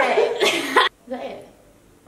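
A woman's loud, breathy burst of laughter lasting under a second, followed by a brief softer vocal sound.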